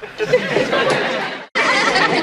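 Sitcom studio audience laughing. The sound drops out for an instant about one and a half seconds in, then audience laughter and voices go on.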